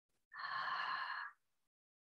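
A single audible breath, one sigh-like breath lasting about a second, taken during a side stretch.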